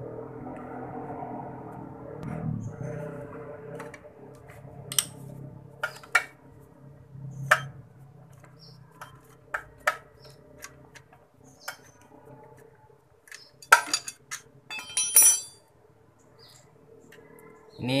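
A metal wrench clinking and clicking on the bolt of a motorcycle's kick-starter pedal as the bolt is worked loose. The sharp knocks are scattered, with the loudest about three quarters of the way through and a quick run of clicks just after.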